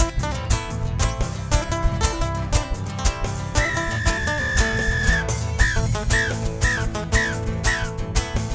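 Live Andean carnaval music: strummed nylon-string guitars over a steady beat and bass. About three and a half seconds in, a high whistle is held for about a second and a half, then five short falling whistles follow about half a second apart.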